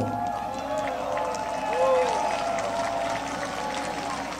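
A large audience's crowd noise, many voices together at once, during a pause in the speaker's speech, with one voice standing out briefly about two seconds in.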